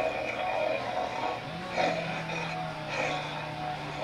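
A Halloween-store animatronic's recorded soundtrack playing from its speaker as the figure moves: music-like sound over a steady low hum that drops out at the start and comes back about a second and a half in.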